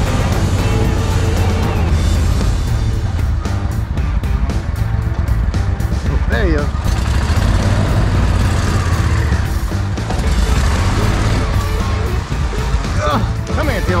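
Air-cooled mud motor running steadily, pushing the boat through the marsh, with music laid over it.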